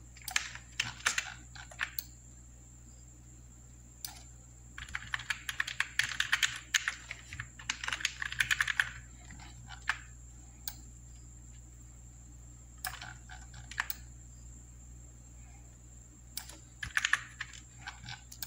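Computer keyboard keys being pressed in bursts: a short burst at the start, a long quick run of keystrokes in the middle, and a few shorter bursts near the end, over a faint steady hum.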